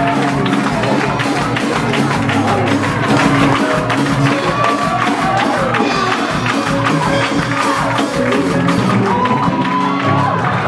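Live gospel praise-break music in a church, loud and driving with a steady percussive beat and sustained low instrument tones, with congregation voices calling out and singing over it.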